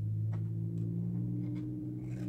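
A steady low hum runs throughout. Over it come a few faint, short snips of scissors cutting into the creases of a folded paper sheet.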